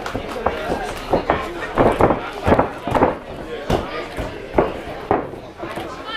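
Voices from the crowd and corners shouting in short bursts during a grappling match, mixed with scattered thuds and knocks as the grapplers work against the cage and go down to the mat.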